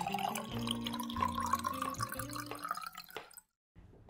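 Short musical jingle with held bass notes and many small clicks, cutting off to silence about three and a half seconds in.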